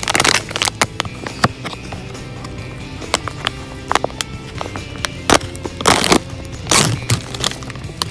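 Scissors snipping through a foil blind bag, with many sharp crinkles and a few louder rustles of the metallic foil as it is cut and pulled open, over steady background music.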